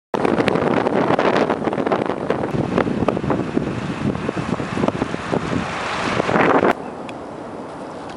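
Wind buffeting the microphone of a camera on a moving road vehicle, a loud rushing rumble with crackling gusts over road noise. It cuts off abruptly shortly before the end, leaving a quieter steady hiss.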